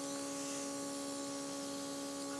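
Small airbrush compressor humming steadily, with a faint hiss of air from the airbrush spraying eyeshadow onto the eyelid.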